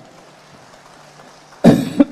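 Low steady hiss of a live headset microphone, then, about a second and a half in, a man coughs once, loud and close on the microphone.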